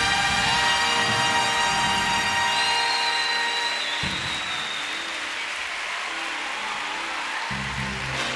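Big band ending a number: sustained brass and reed chords with a rising line. From about three seconds in, audience applause takes over as the band sound thins out.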